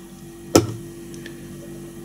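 A single sharp click about half a second in, over a steady low electrical hum.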